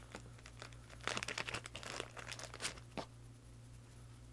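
A thin clear plastic bag crinkling as a fingerboard deck is worked out of it. The crinkling is busiest from about a second in to nearly three seconds, with one last crackle just after.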